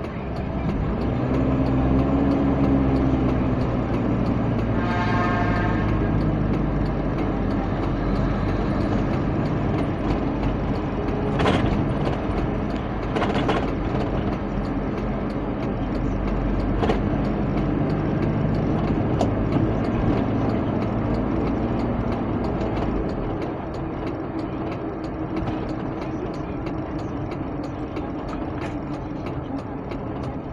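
Car engine and road noise heard inside the cabin of a moving car, the engine pitch rising as it speeds up in the first few seconds and then holding steady. A short high tone sounds about five seconds in, and two brief sharp sounds come near the middle.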